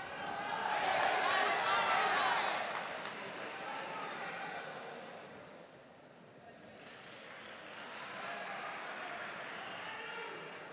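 Fight crowd shouting and calling out, many voices at once with no clear words. It is loudest about one to three seconds in, eases off around the middle, then builds again near the end.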